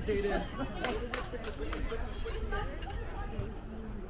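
Indistinct chatter of several voices from people around a youth soccer field, with two sharp knocks about a second in.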